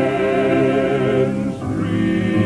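Gospel vocal quartet singing in close harmony, holding a chord with a slight waver in the voices. About a second and a half in, the chord breaks off briefly and a new one begins.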